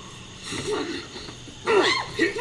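Actor's effort noises in a stage fight: faint short grunts, then a sharp falling cry near the end.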